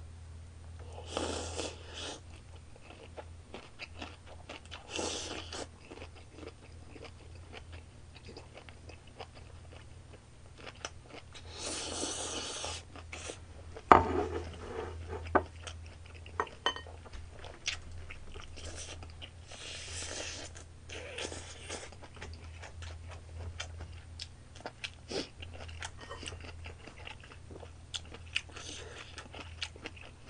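A person chewing and crunching mouthfuls of food, with chopsticks clicking against a metal bowl and occasional short breathy rushes of noise. One sharp knock about fourteen seconds in is the loudest sound, and a steady low hum runs underneath.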